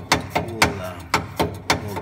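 Hand-operated air pump on a 1924 Alfa Romeo RL Targa Florio being worked in a steady rhythm, clacking at about two strokes a second. It is pressurising the fuel tank to push petrol forward to the carburettors for a cold start.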